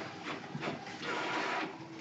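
Keys of a handheld calculator being pressed: a quick series of light clicks as a sum is keyed in.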